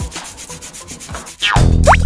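Rapid, evenly repeated rubbing strokes, like something being scrubbed. About one and a half seconds in, loud cartoon-style music with swooping slide-whistle effects comes in.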